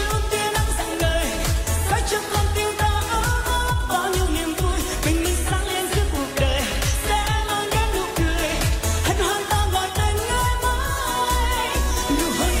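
Vietnamese pop song performed live: a woman singing over a dance backing track with a steady, regular beat.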